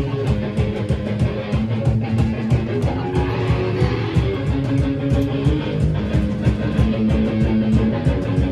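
Punk rock band playing live: electric guitars and bass over drums, with a fast, steady cymbal beat and a long held low note, and no vocals.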